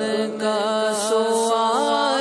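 A man singing a devotional Urdu song (naat) solo into a microphone, holding long ornamented notes that bend and glide over a steady low drone.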